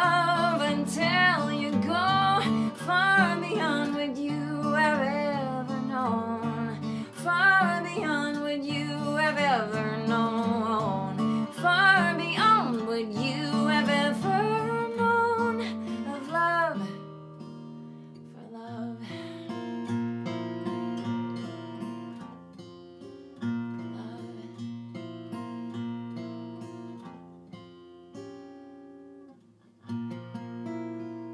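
Woman singing a held, wavering melody over steel-string acoustic guitar. About halfway through the voice stops and the guitar plays on alone, more quietly, in the song's closing bars.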